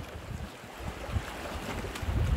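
Small sea waves washing and splashing among shoreline rocks, with wind buffeting the microphone in uneven low gusts.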